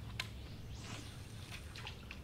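Quiet water sounds: a sharp click, then a soft brief splash-like hiss about a second in and a few faint ticks, over a steady low hum.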